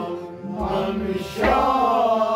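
Kashmiri Sufi song: men singing in chant-like style over a harmonium's held notes. The music thins briefly, then the voices come in strongly together about one and a half seconds in.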